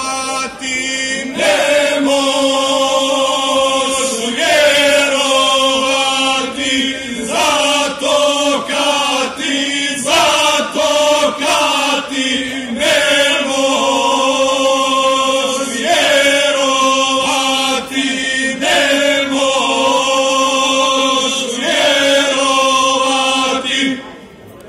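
Male folk singing group singing a cappella through microphones and a PA, with the lower voices holding a steady drone under the melody in phrases of a few seconds. The singing stops abruptly at the very end as the song finishes.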